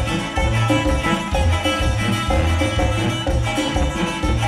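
Live regional Mexican band playing an instrumental passage: a tuba carrying a pulsing bass line under acoustic guitar, congas and drums, with no singing.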